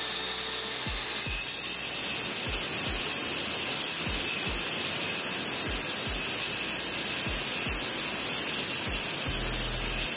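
A 230 mm angle grinder with a diamond blade cutting into a wall: a steady high whine over grinding noise. Background music with a thumping beat of about two a second runs under it.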